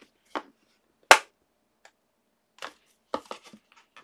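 Snap-lock plastic storage container being closed: the lid pressed on and its plastic latches clicking shut. Several separate sharp plastic clicks, the loudest about a second in and a quick cluster near the end.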